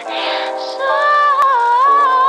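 Song with a female vocal over sustained chords; the voice comes in about a second in and holds long, wavering notes.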